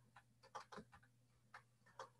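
Near silence, with a few faint, scattered clicks of a computer keyboard.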